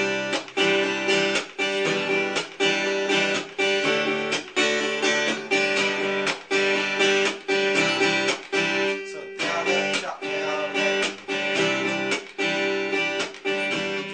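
Acoustic guitar strummed in a steady, repeating chop pattern: a down and an up strum, then the strings muted and a percussive chop down, each stroke cut off sharply.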